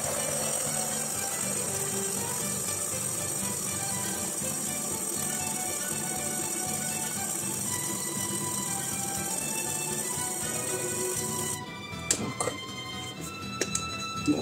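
Immersion stick blender running steadily in a pot of thick melted-cheese mass, puréeing it smooth. It cuts off about three-quarters of the way through, followed by a few light knocks.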